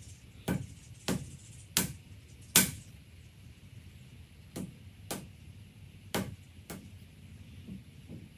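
A wooden potter's tool knocking down onto the clay and work table, chopping off lengths of clay for mug handles. Eight sharp knocks in two runs of four, the fourth the loudest.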